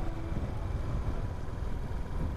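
Motorcycle ride heard from an on-bike camera: a low, uneven rumble of wind buffeting over the engine, with the last of the background music fading out faintly.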